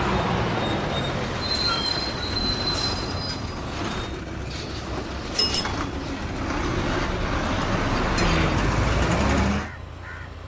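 A bus passing close by: loud engine and road noise with a thin high squeal about two seconds in, cutting off suddenly near the end.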